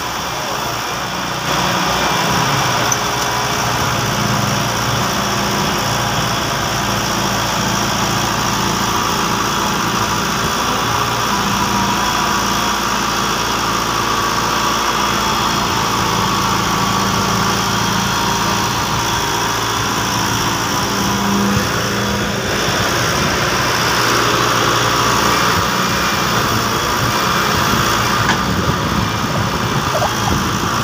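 John Deere 595D excavator's diesel engine running steadily as the machine digs, a little louder from about a second and a half in.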